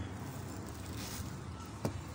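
Faint handling noise of stiffened paper-mat fabric being pressed and pinned over a hat block, over a steady low hum, with a single sharp click just before the end.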